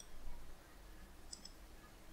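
Faint computer mouse clicks, one at the start and another about a second and a half in, over quiet room tone with a low hum.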